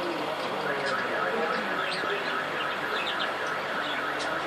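Steady bubbling and hiss of aquarium air stones in the water, with a few faint high chirps about halfway through.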